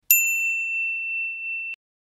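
A single high-pitched, bell-like ding. It rings on steadily for about a second and a half, then cuts off abruptly.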